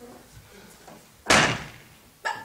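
A stage-set door slammed shut once, a sharp bang a little over a second in that rings away briefly.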